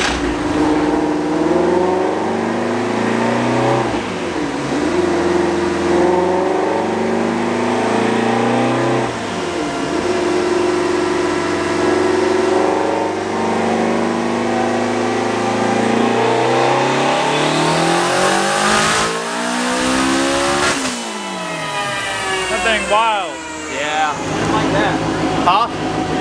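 Twin-turbocharged Ford Mustang Shelby GT350's 5.2-litre V8 making a full-boost dyno pull in fourth gear: the engine note climbs in pitch with two brief dips, climbs once more, then falls away as the engine is let off. The pull fell off partway, which the tuner thinks is the boost hitting the 14 psi overboost limit and being cut back.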